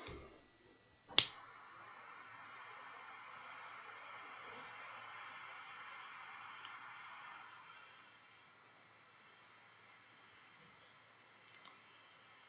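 A jet torch lighter clicks alight about a second in, and its flame hisses steadily for about six seconds while it lights a cigar's foot, then fades. A faint click comes near the end.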